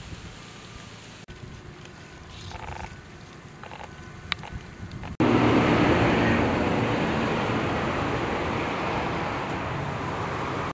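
Outdoor field ambience: fairly quiet with a few faint short sounds for the first half, then, after an abrupt cut about halfway, a loud steady rushing noise that slowly fades.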